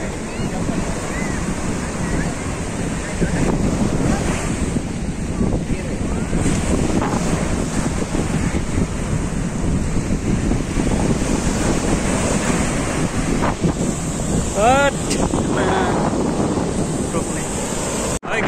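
Sea waves breaking and washing up a sandy beach, with wind buffeting the microphone.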